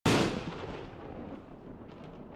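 A single deep boom, like a cinematic impact or explosion sound effect, that hits at once and then rumbles away slowly over several seconds.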